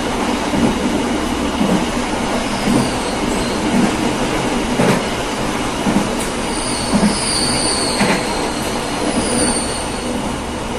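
Train wheels running on the rails, with a clickety-clack over rail joints about once a second. High wheel squeals come and go in the second half.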